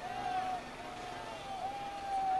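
Single-cylinder speedway motorcycle engines running at a steady high pitch that rises and dips slightly.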